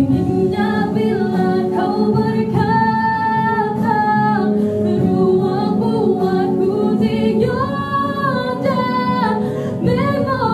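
A woman singing solo into a handheld microphone, with long held notes about three seconds in and again near eight seconds.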